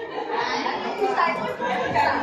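Several people talking at once: indistinct chatter among a group of people.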